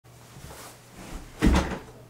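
A person sitting down heavily into a padded office chair: faint shuffling, then a single deep thump with a brief creak about one and a half seconds in.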